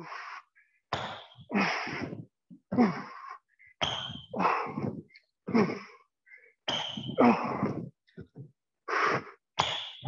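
A man's heavy breathing from the exertion of burpees: hard huffs and grunted exhales, about one a second and often in pairs.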